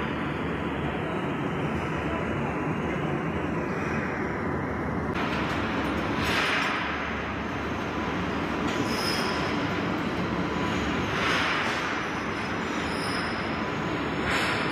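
Steady machinery rumble and hiss, with a louder hissing swell every two to three seconds.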